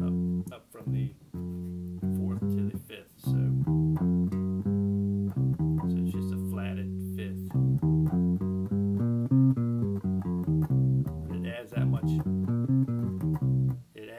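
Electric bass playing the C blues scale note by note in phrases that step up and down in pitch, including the added blue note, a chromatic half step inside the minor pentatonic.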